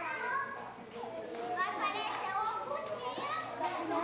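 A group of children chattering and calling out over one another, several voices overlapping. The chatter gets louder about a second in.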